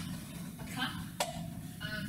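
Quiet, indistinct speech, with one sharp click a little past a second in, over a steady low room hum.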